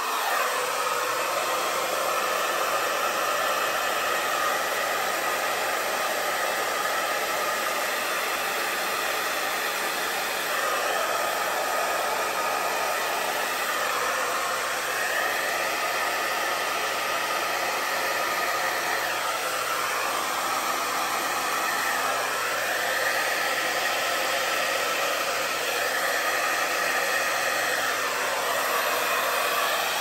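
Handheld hair dryer running steadily, blowing air onto wet acrylic paint on a canvas to spread it into a bloom. Its rushing sound shifts in tone a little now and then as it is moved over the canvas.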